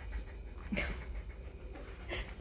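A dog panting, with one short, louder sound a little under a second in.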